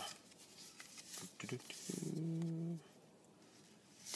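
A man humming one low, level note for just under a second, about two seconds in. Faint rustles of trading cards being handled come just before it.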